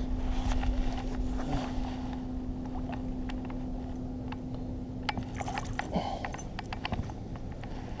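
Baitcasting reel being cranked to bring in a hooked largemouth bass, a steady low hum that stops about six seconds in, with scattered clicks and splashy knocks as the fish is brought alongside the kayak.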